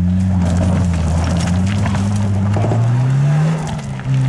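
Car engine revving hard under load, its pitch climbing near the end, while the driven wheels spin in sand and gravel and throw up grit: the car is stuck and being driven and pushed to get it free.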